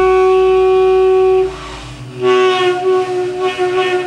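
Saxophone holding one long note for about a second and a half, then after a brief pause coming in on another sustained note with a slight waver in pitch, the band playing softly underneath.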